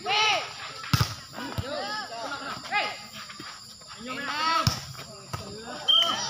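Volleyball rally: young players shouting calls, with sharp hits of the ball about a second in and again just before five seconds.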